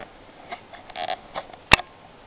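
Footsteps in snow, a few irregular steps, then a single sharp click near the end that is the loudest sound.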